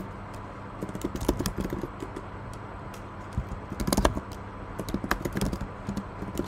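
Typing on a computer keyboard: irregular runs of key clicks in short bursts, with a few louder keystrokes about two thirds of the way in. A faint steady low hum runs underneath.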